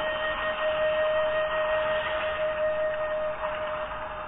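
Slow meditation background music holding one long, steady note.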